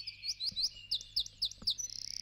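Birdsong: a bird repeating quick, high, hooked chirps, about four a second, over a faint steady low hum.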